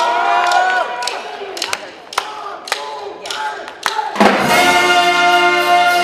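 Live New Orleans brass band (trumpets, trombone, saxophone, sousaphone and drum). It opens on a swelling held horn chord, goes sparse with sharp hits and short notes, then about four seconds in the full band comes in loud on a sustained chord.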